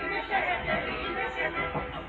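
Many voices at once over orchestral music in a live opera performance, heard through a narrow-band mono broadcast recording with the top end cut off.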